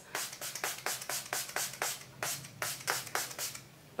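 Facial mist spray bottle pumped in a rapid run of short hissing spritzes, about five a second, stopping shortly before the end.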